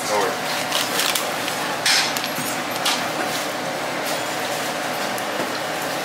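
Steady room noise of a small takeout shop with faint background voices and a faint steady hum. A few short rustles or clicks come about one, two and three seconds in.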